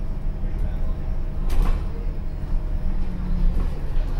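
Interior sound of an Alexander Dennis Enviro400H hybrid double-decker bus on the move: a steady low drivetrain and road rumble, with a single sharp rattle or knock about one and a half seconds in.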